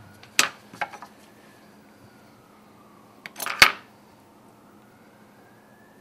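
Metal dissecting instruments clicking against each other and the board: a few sharp clicks near the start and a louder cluster of clicks a little past the middle. A distant siren wails faintly underneath, slowly rising and falling.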